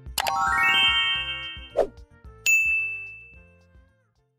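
Editing sound effects: a run of bright chime notes climbing quickly in pitch and ringing on, a brief click a little before two seconds in, then a single clear bell ding at about two and a half seconds that fades away over about a second.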